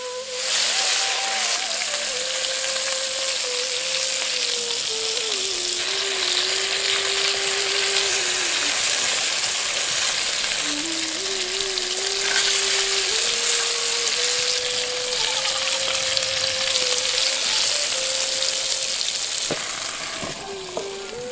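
Small slit brinjals frying in hot oil, sizzling steadily throughout. A wooden spatula is stirring and turning them in the pan.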